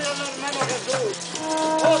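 A man chanting loudly in the street over procession folk music: a steady held note runs under the voice, with a hand drum beating.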